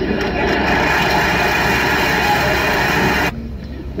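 Audience applauding, which cuts off suddenly about three seconds in, over a steady low drone.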